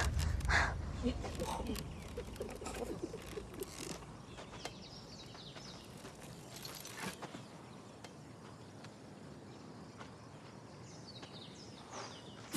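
A woman's short grunt of effort at the start as she hacks at a wicker training dummy with a machete. Then quiet outdoor ambience with a few faint knocks and rustles.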